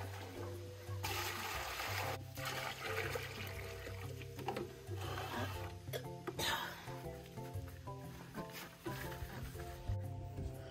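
Background music with a steady melody and bass line. Under it, water splashes in bursts as it is scooped and poured from a plastic jerrycan into a basin.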